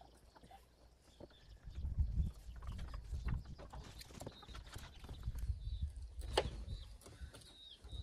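Knife cutting and scraping meat loose inside a snapping turtle's shell: scattered sharp clicks and wet handling noises. A low rumble runs from about two seconds in, and faint bird chirps come in the second half.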